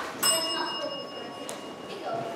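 A single bright bell-like ding, struck about a quarter second in and ringing on as it fades over more than a second, with a short click near the end.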